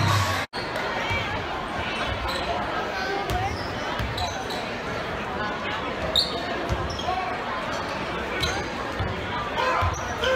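Basketballs bouncing repeatedly on a hardwood gym floor, over the chatter of a crowd in a large echoing gym.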